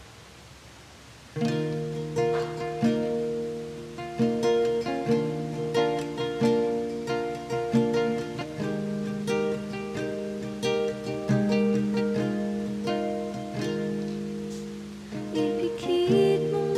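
After a quiet pause of about a second and a half, an acoustic guitar starts an instrumental song intro of picked notes and chords.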